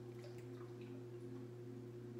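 Faint drips and small water sounds in an indoor dog hydrotherapy pool: a few light ticks over a steady low hum.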